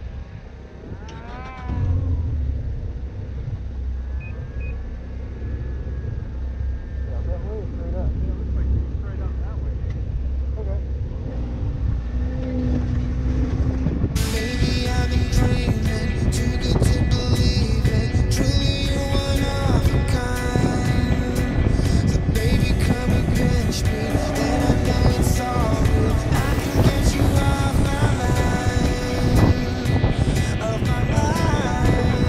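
Snowmobile engine revving up about a second in and running as the sled moves off. From about halfway, music with a steady beat comes in over it.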